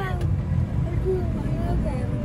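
Steady low rumble of a moving road vehicle, with faint voices talking over it.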